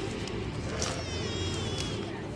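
A short, high-pitched wavering whine lasting about a second, starting about halfway through, over a steady background hiss and hum.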